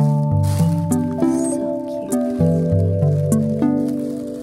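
Background music: a soft instrumental with a bass line stepping from note to note and notes that start sharply and fade.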